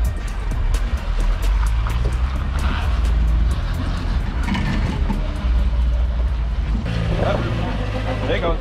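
Suzuki Samurai's engine running low and steady as it crawls over rocks, mixed with background music. Voices come in near the end.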